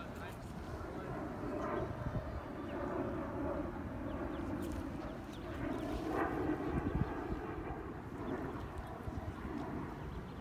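A low, distant engine rumble that swells about two seconds in and again around six to seven seconds, under faint background voices.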